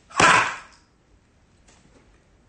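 Pages of a large Bible flipped quickly by hand: one loud papery swish that fades over about half a second, then a fainter page rustle near the end.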